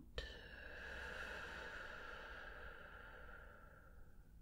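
A long, soft exhale through the mouth, the out-breath of a slow deep breath, tapering away over about three and a half seconds.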